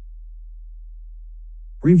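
A steady low hum under a gap in the narration, with a voice starting to speak near the end.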